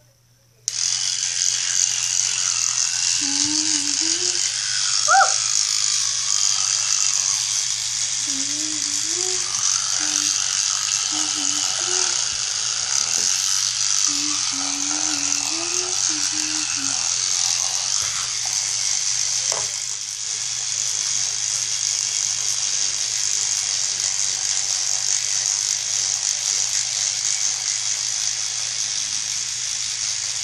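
Electric toothbrush switched on about a second in, then buzzing steadily while brushing teeth, with a high hiss over a low hum. A faint voice wavers under it now and then in the first half.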